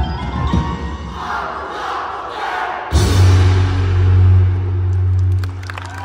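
Indoor percussion ensemble playing: marimbas and vibraphones over low drum hits build in a swell, then about halfway through a sudden loud low final chord is struck and held for two or three seconds before it eases off.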